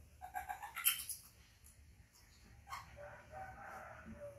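Baby macaque calling: a quick run of short, high squeaks in the first second, then a longer thin whine near the end.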